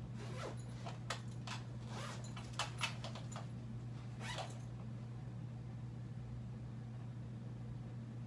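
Clothes rustling as they are pulled on and handled, with scattered sharp clicks, the two loudest close together a little past halfway through that stretch; it stops after about four and a half seconds. A steady low hum runs underneath throughout.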